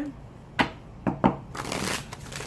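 Tarot cards being handled: a few sharp clicks of cards tapped or snapped together, then a short shuffling rustle near the end.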